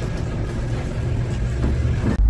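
Electric sugarcane press running, its rollers crushing stalks of cane, with a steady low motor hum.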